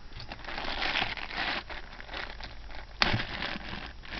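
Plastic packaging crinkling and rustling as it is handled, with scattered light clicks and a sharper clack about three seconds in.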